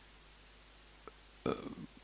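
A man's single short burp about a second and a half in, after a stretch of near silence.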